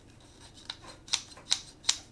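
Zhiyun Smooth Q gimbal's phone clamp being opened and a phone fitted into it: several sharp clicks and taps about half a second apart.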